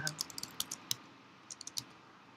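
Computer keyboard being typed on: a quick run of about eight keystrokes, then a short pause and a second burst of four or five keystrokes near the end.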